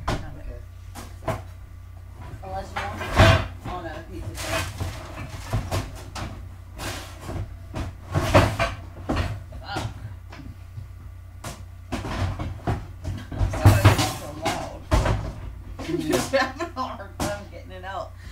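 Kitchen cupboard doors and metal baking pans knocking and banging as the pans are taken out: a series of irregular sharp bangs, the loudest about three seconds in and again near fourteen seconds.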